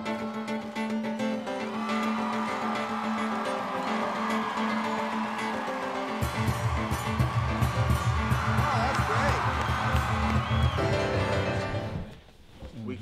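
Yamaha grand piano music, played partly on the strings inside the open piano, with deep pulsing bass notes coming in about six seconds in.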